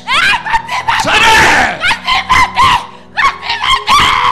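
A woman screaming and crying out into a microphone: short, loud, pitched cries, with one long scream about a second in and a quick run of repeated cries after it.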